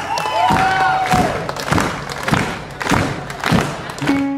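A live band's bass drum beating a steady rhythm, about three beats every two seconds, with crowd cheering over it.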